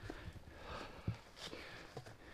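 Faint footsteps of a hiker climbing a grassy, rocky mountain path, soft thuds about twice a second.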